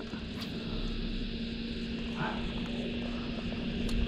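Bow-mounted electric trolling motor running with a steady hum, with a couple of faint clicks.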